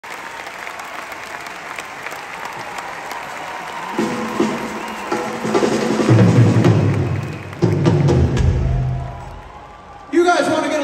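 Arena crowd applauding and cheering, then from about four seconds in a live rock band with drums plays a few loud phrases over the crowd, fading out near the end.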